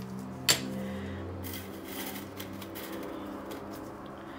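A sharp click about half a second in, followed by a ringing tone that fades away over about two seconds, then light tapping and clicking as metal lash tweezers and the small tabletop tool sterilizer pot are handled.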